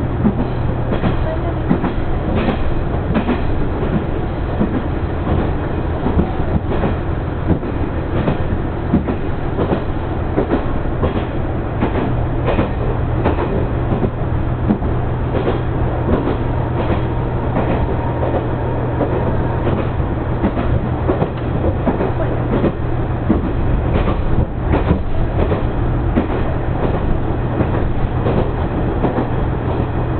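Diesel railcar running at speed, heard from inside the passenger cabin: a steady low engine drone under the constant clatter of wheels over the rails, with irregular clicks and knocks from rail joints.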